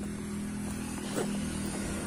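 A steady low engine hum, holding one even pitch.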